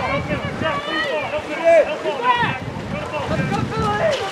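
Shouting voices from spectators and players at a water polo game, over wind noise on the microphone and splashing water.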